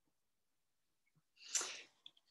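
Near silence, then about a second and a half in one short, sharp breath from the speaker, lasting about half a second.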